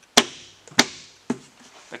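Plastic Subaru Outback door trim panel knocking against the door as it is hung on the top edge and lined up over its clips: three sharp knocks about half a second apart, the first the loudest.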